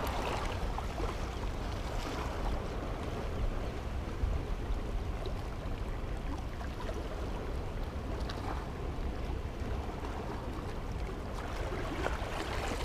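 Wind buffeting the microphone in a steady low rumble, over the wash of choppy sea water, with a few faint clicks.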